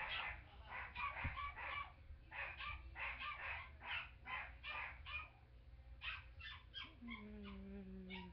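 Faint backing music leaking from headphones: a quick run of light, high notes, two or three a second, from the song's violin-solo section, which the trombonist sits out. About seven seconds in, a soft low note comes in and is held.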